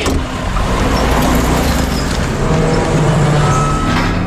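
Car engine revving as the car accelerates away, its note climbing in pitch in the second half.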